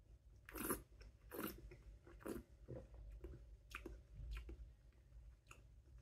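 Faint mouth sounds of a man swallowing and tasting a mouthful of perry: a series of soft, irregular gulps and smacks, the loudest in the first two and a half seconds.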